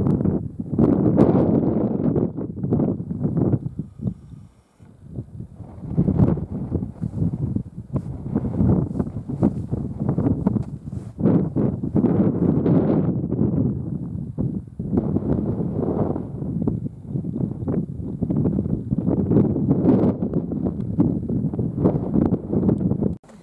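Wind buffeting the camera microphone in strong, uneven gusts, easing briefly twice.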